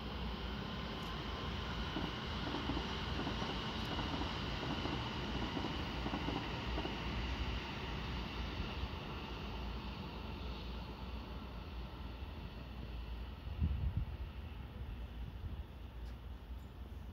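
Steady distant hum of city and rail-yard traffic, with wind buffeting the microphone and a stronger gust about fourteen seconds in.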